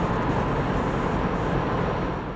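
Steady road and engine noise inside the cabin of a Subaru XV Crosstrek at freeway speed, its CVT held in a higher manual-mode gear.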